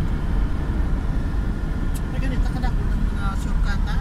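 Steady road and engine rumble inside a car's cabin moving at highway speed, with passengers' voices faintly over it in the second half and a short click about two seconds in.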